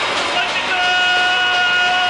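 Amplifier feedback at a punk gig: a steady, high-pitched tone starts about half a second in and holds flat for about a second and a half, over the general noise of the club.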